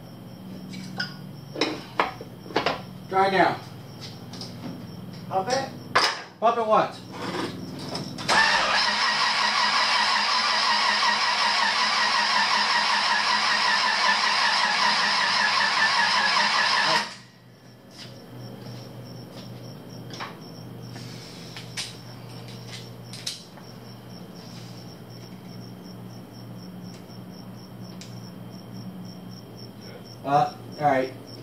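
A starter motor cranking the Suburban's engine for about nine seconds without the engine catching, then cutting off abruptly. The fuel mixture reads rich while cranking.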